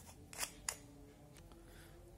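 Two faint clicks as the screw-on top cap of a motorcycle racing carburetor is twisted off and handled.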